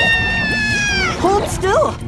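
A cartoon character's long, high-pitched squeal that falls in pitch and breaks off about a second in, followed by short squeaky calls.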